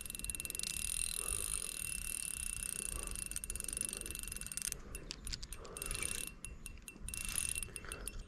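Spinning reel's drag buzzing in fast continuous clicks as a large pike pulls line off the spool, then slipping in short stop-start spurts after about five seconds: the fish is taking line faster than the angler can hold it.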